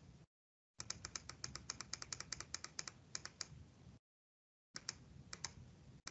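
Computer keys tapped in a quick run of about two dozen light clicks, then a few more clicks near the end.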